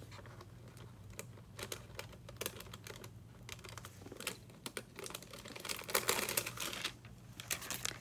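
Faint, irregular small clicks, taps and rustles of nail supplies being handled and moved about on a worktable, with a denser flurry about six seconds in.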